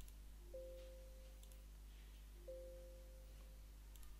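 Windows system alert chime sounding twice, about two seconds apart: each is a short low note followed by a higher ding that fades over about a second. Faint mouse clicks come with them.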